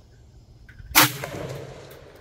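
A single 6.5 mm rifle shot about a second in, its report echoing and fading away over the following second.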